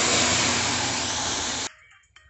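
Cooked masoor dal with spinach poured into hot mustard-oil tempering in a kadai, sizzling loudly with a steady hiss that cuts off suddenly near the end.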